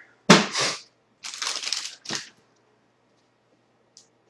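A trading card pack's wrapper being torn open by hand: a sharp crack about a third of a second in, then about a second of crinkling and tearing, and a last short rip just after two seconds.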